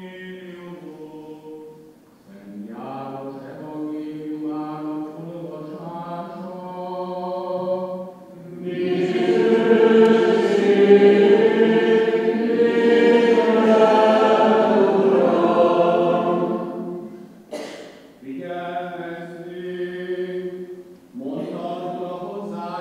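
Greek Catholic liturgical chant: a solo voice chants on a few steady notes, then a choir of many voices sings a longer and louder response. The solo chant resumes near the end.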